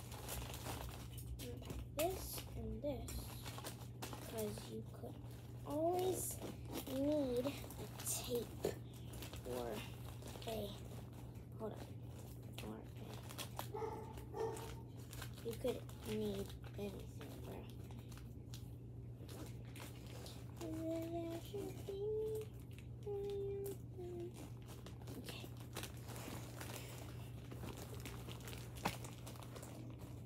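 Rustling and crinkling of clothes and bags being handled while packing, with a steady low hum throughout. Quiet wordless vocal sounds come and go, clustered a few seconds in and again past the middle.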